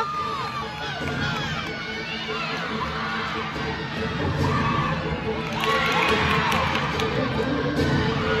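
A group of gymnastics teammates shouting and cheering, many voices whooping over one another, swelling louder about six seconds in.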